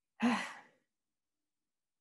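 A woman sighing: one breathy exhale with a brief voiced start, lasting about half a second and fading out.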